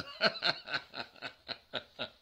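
A man laughing: a run of short chuckles, about four a second, growing fainter.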